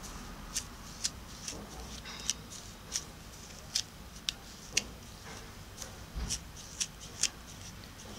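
A plastic comb rakes through damp, tangled afro hair in a dozen or so short, quick strokes, roughly every half second. Each stroke is a brief, high scratch as the comb teases out the knotted tips, detangling the hair before braiding.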